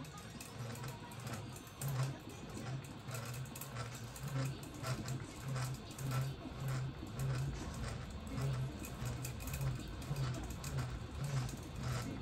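Electric fishing reel's motor winding new line onto its spool: a low hum that pulses about twice a second, with light clicking.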